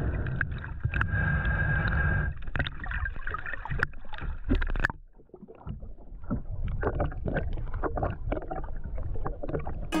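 Muffled underwater sound picked up by a camera held below the surface: a dense low rumble of moving water with many small clicks and crackles. About halfway through, the rumble drops away briefly, then returns with scattered crackling.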